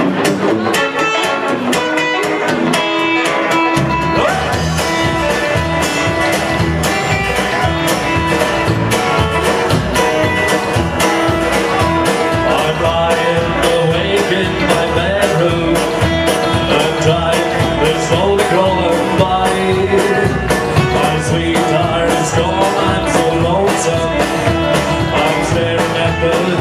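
A live rockabilly trio plays an instrumental intro on electric hollow-body guitar and acoustic guitar. An upright double bass comes in about four seconds in with a steady beat.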